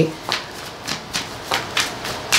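Tarot cards being shuffled by hand: a handful of short, crisp card flicks spread over about two seconds.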